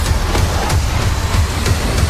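Action film trailer soundtrack: music over a heavy, continuous low rumble, with several sharp hits.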